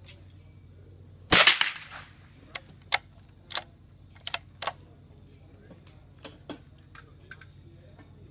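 A single shot from a .22 Brno bolt-action rifle about a second in, a sharp crack with a short ringing tail. It is followed by a series of small metallic clicks as the bolt is worked to eject the spent case and chamber the next round.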